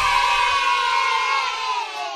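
A group of children cheering together in one long call that slides slightly down in pitch and fades away near the end.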